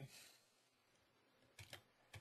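Near silence, with a couple of faint computer mouse clicks about one and a half seconds in.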